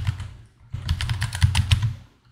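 Typing on a computer keyboard: a keystroke or two at the start, then a quick run of about ten keystrokes in the second half.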